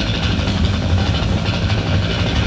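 Heavily distorted electric bass playing a fast, low thrash metal riff live, a dense, rapidly pulsing low rumble.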